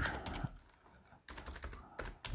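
Computer keyboard typing: short runs of key clicks, broken by a near-silent pause of under a second in the middle.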